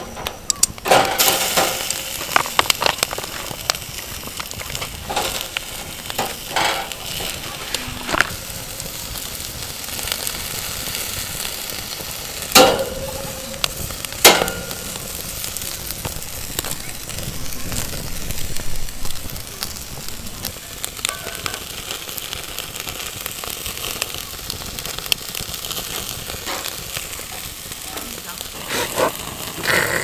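Marinated chicken sizzling steadily over a charcoal fire, with metal tongs and the wire grill grate clicking now and then as the meat is turned. Two sharp metallic clanks come near the middle.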